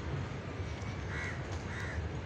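A bird giving two short, harsh calls, about a second in and again half a second later, over a steady low background rumble.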